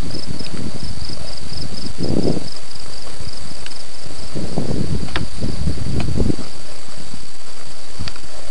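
Insects in the field give a steady, high-pitched trill. Under it run low rumbling swells from the camera being carried along the row as the person walks, strongest about two seconds in and again from about four and a half to six seconds.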